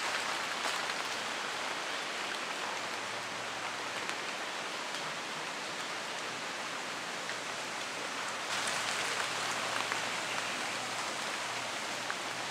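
Rain falling on rainforest foliage: a steady hiss with scattered drops, growing a little louder about eight and a half seconds in.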